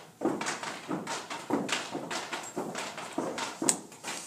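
A group stomping feet and clapping hands in unison as a body-percussion routine, sharp beats at about two a second.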